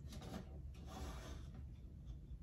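Faint rubbing and scraping as a wire basket of wooden stakes is set down and shifted on a shelf, a couple of soft handling noises over a low room hum.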